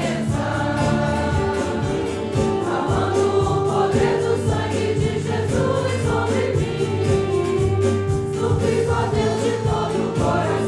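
A group of voices singing a Portuguese-language hymn in held notes, with instrumental accompaniment.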